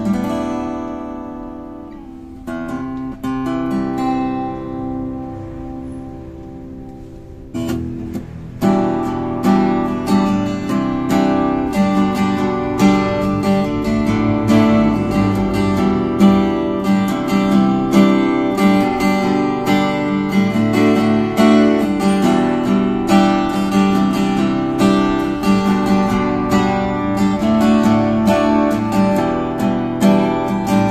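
Solid-wood cutaway acoustic guitar played fingerstyle: for the first several seconds a few notes and chords are left ringing and fading, then from about eight seconds in it settles into a fuller, steady rhythmic pattern of plucked and strummed chords.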